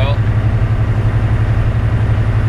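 A semi truck's diesel engine running steadily as it drives, heard from inside the cab: a loud, even low drone with a fast regular pulse, over road noise.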